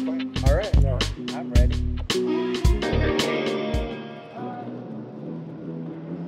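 A band playing in a large, empty hall: heavy kick-drum hits and crashes under sustained guitar and bass notes. The playing stops about four seconds in, leaving notes ringing out.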